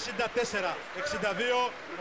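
A male sports commentator speaking in Greek, calling the final score.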